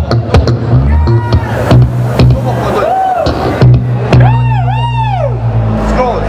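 Live rock band playing: a loud bass guitar line and drum hits, with a high sliding note that swoops up and down twice about four seconds in.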